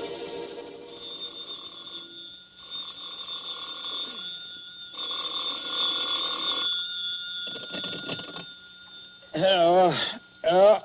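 Telephone bell ringing repeatedly, in several rings with short pauses between them, as a radio-drama sound effect. A man's voice answers just before the end.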